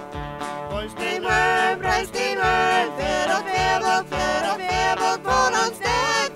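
A small live band with acoustic guitar, electric guitar and keyboard playing a song with a steady beat; women's voices begin singing about a second in.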